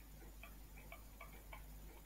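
Faint, irregular little ticks of a stylus tapping on a pen tablet as digits are handwritten, about half a dozen over the two seconds.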